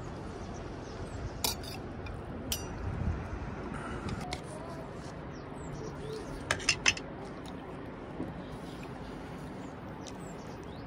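Steel spoon clinking against a steel plate and bowl while eating rice and curry: a few scattered sharp clinks, then three quick ones close together, over a steady low background hiss.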